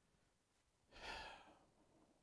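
A single faint sigh-like breath from a man, about a second in, lasting about half a second, in an otherwise near-silent pause.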